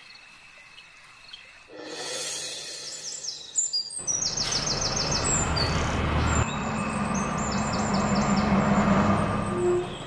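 Birds chirping in quick runs of high notes. About four seconds in, the steady running of a bus engine with street noise joins them and continues to the cut.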